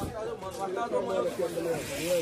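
Indistinct background voices of several people talking at once, quieter than close speech, with no one voice standing out.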